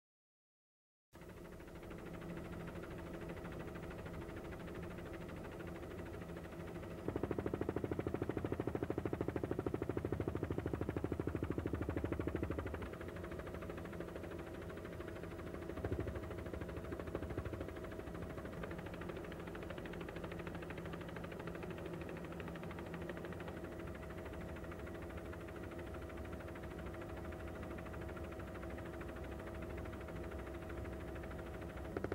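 Steady drone of an aircraft's engine heard from on board, starting after about a second of silence, with several steady tones. It grows louder, with a rapid pulse, for about five seconds in the middle.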